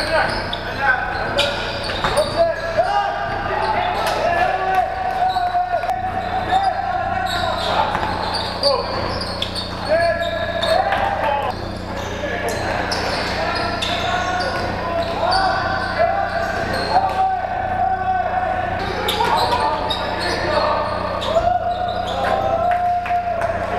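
A basketball bouncing on a hardwood gym floor, with voices throughout, in a large sports hall.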